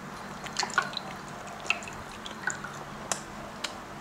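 Soft, scattered wet clicks and smacks of someone chewing food close to a clip-on microphone, over a faint steady hum.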